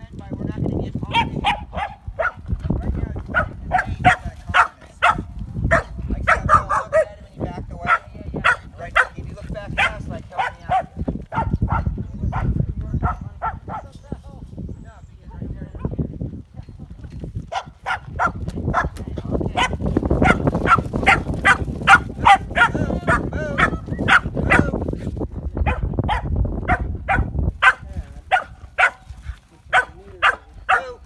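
A young dog barking rapidly and repeatedly at sheep, about three barks a second, with a pause of a few seconds just before halfway.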